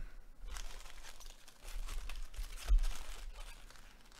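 Plastic wrappers of trading-card packs crinkling and rustling as they are handled, with a louder knock about two and a half seconds in.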